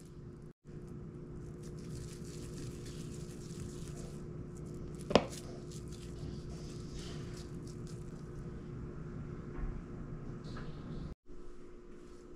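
Wet hands squishing and patting ground beef into patties, soft and steady over a constant low hum, with one sharp tap about five seconds in.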